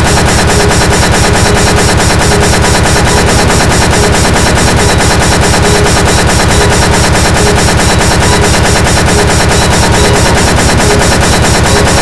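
Speedcore: a very fast, evenly repeating distorted kick drum hammering without a break, with sustained synth tones held over it.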